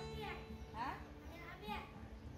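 High children's voices with background music whose notes are held steady underneath.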